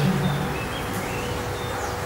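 Steady background room noise with a faint hum, as the lecturer's voice trails off near the start; a few brief, faint high chirps sound through it.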